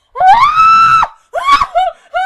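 A person screaming loudly: one long, high scream that rises in pitch, then a second shorter cry.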